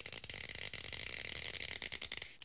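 Crackling electric-arc sound effect: a dense run of rapid clicks over a steady hiss.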